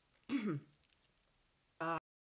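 A woman clearing her throat once, a short sound that falls in pitch.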